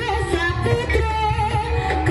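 Live Javanese jaranan gamelan music: a barrel drum keeping a pulsing beat with small kettle gongs struck in the ensemble, and a sung melody sliding in pitch over it.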